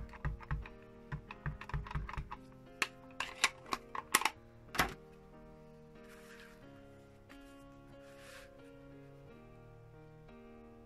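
Quick light taps of an ink pad being dabbed onto a clear acrylic stamp block, about a dozen in the first two and a half seconds, then a few sharper clicks up to about five seconds in. Soft background music with held notes runs underneath and is alone after that, apart from two brief rustles.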